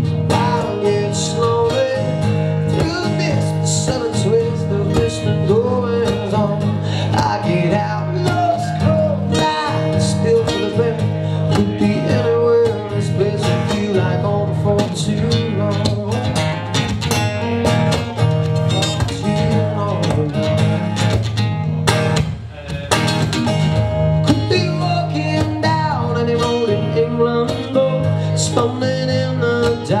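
Two acoustic guitars strummed together in a steady folk-style song, with a brief drop in the playing about 22 seconds in.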